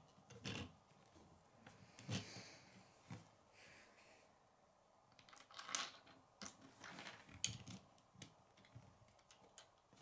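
Faint, scattered clicks and taps of plastic Lego pieces being handled and set down on a wooden table, more frequent in the second half.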